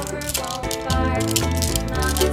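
A handful of glass marbles clicking and rattling against each other as they are shaken in a hand, over background music.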